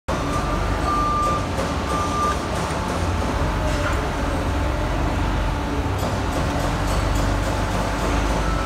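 Amada HG1003 ATC hybrid-drive press brake running, a steady low machine hum, with two short high tones about one and two seconds in.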